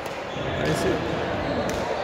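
Badminton rally: two sharp racket strikes on a shuttlecock about a second apart, over the chatter of voices in a large gym hall.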